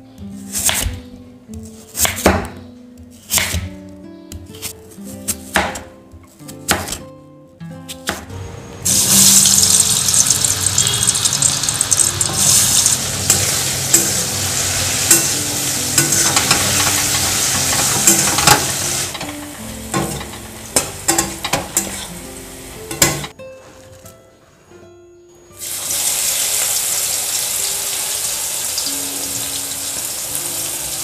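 A kitchen knife chopping peeled potatoes on a wooden cutting board in a series of sharp strokes, then potato strips sizzling steadily in hot oil in a wok. After a few knocks and a short quiet gap, bitter gourd pieces sizzle as they fry in oil, with soft background music throughout.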